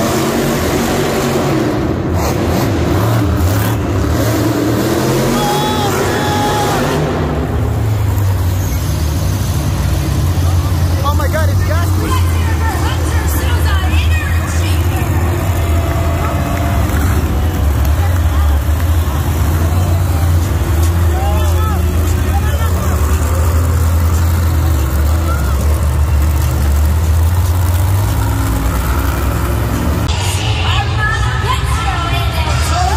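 Monster truck engines running with a loud, steady low note, and a voice over it, likely the arena announcer.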